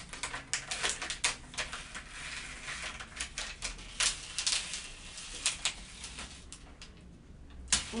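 High-tack transfer mask being peeled off the backing paper of patterned heat-transfer vinyl. A run of irregular crackling clicks as the adhesive lets go, with a longer rasping stretch about two to four seconds in.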